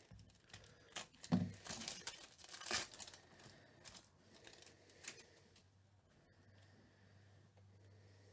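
A trading-card pack's foil wrapper being torn open and crinkled by hand: a run of short crinkles over the first three seconds and one more about five seconds in.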